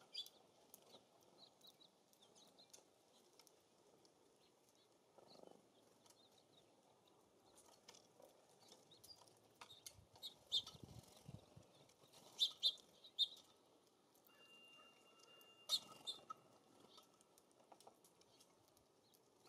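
Small songbirds at a seed feeder: scattered short chip calls and sharp clicks, with several louder ones in the second half, over a faint outdoor background.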